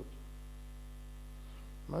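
Steady low electrical mains hum in the recording, with a man's voice starting again at the very end.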